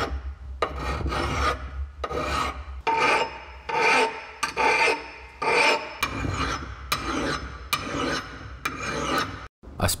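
Hand file rasping over a steel axe head in repeated push strokes, about two a second, with a faint metallic ring, as the bit is filed toward an edge. The filing stops abruptly just before the end.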